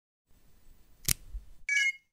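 Short electronic logo sound effect: a faint low rumble with a sharp click about a second in, then a bright, high chime near the end that cuts off suddenly.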